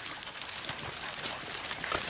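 Faint, fairly even rustling and scuffling of several beagles pushing through dry brush and twigs.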